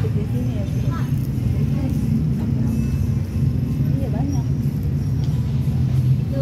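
Faint, brief voices over a loud, steady low rumble of background noise.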